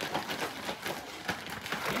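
Irregular crackling, rustling and clicking of kitchen handling: a zip-top plastic bag rustling and chocolate-coated cereal being stirred with a plastic spatula in a plastic bowl.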